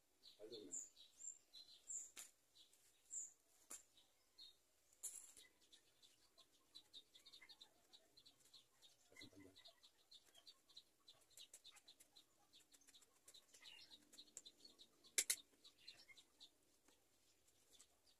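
Faint, scattered high bird chirps over near silence, with one sharp click about fifteen seconds in.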